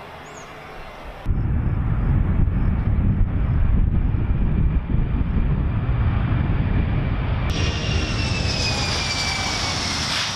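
Boeing C-17 Globemaster III's four turbofan engines: after a quieter first second, a loud, steady deep rumble as the jet comes in over the airfield. From a cut about seven and a half seconds in, a closer sound with a high turbine whine that slowly falls in pitch as the aircraft rolls along the runway.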